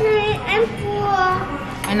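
Young children's high-pitched voices talking and playing.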